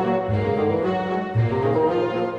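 Orchestra playing classical concert music, with bowed strings prominent. A low note repeats about once a second under moving higher lines.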